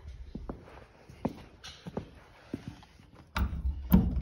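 Scattered light clicks and taps, then near the end louder rubbing and rattling as a hand takes hold of a steel hook latch on a sliding metal barn door.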